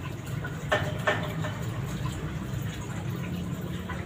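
Water from an aquarium top filter splashing and trickling steadily into the tank, with two brief faint sounds about a second in.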